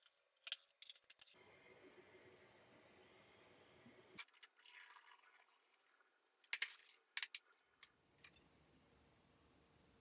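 Faint clinks and clicks of glass swing-top bottles being handled, and kombucha being poured through a funnel into a glass bottle, heard as a soft steady rush of liquid with a couple of sharp glass clinks about two-thirds through.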